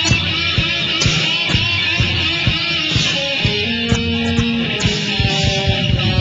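Late-1980s German hard rock band playing an instrumental passage: electric guitars over bass and a steady drum beat, with no vocals.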